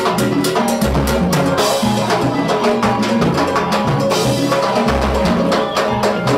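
Salsa music with busy, steady percussion and a pitched bass line.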